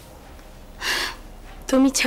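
A sharp gasp about a second in, then near the end a woman's voice in a short, wavering, wordless vocal sound.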